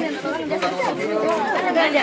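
Chatter of several voices talking at once, overlapping, with no single speaker standing out.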